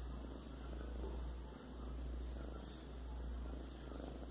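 A kitten purring close up, a low steady rumble that swells and fades about once a second with its breaths.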